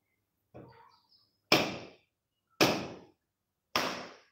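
A coconut struck hard three times, about a second apart, against a hard surface to crack it open as a puja offering, after a lighter knock near the start.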